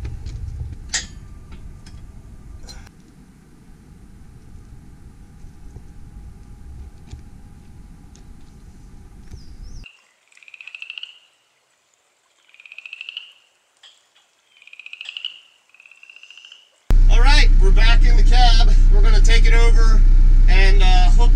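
A frog calling four times, each call a short pulsed trill rising slightly in pitch, about a second and a half apart. Before it, a low rumble with one sharp knock about a second in; near the end, a tractor's engine running loud and steady, heard from inside its cab.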